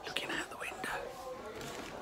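A person whispering, breathy and low, mostly in the first second.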